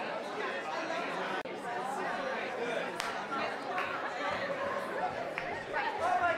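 Crowd chatter: many people talking at once, overlapping so that no single voice stands out.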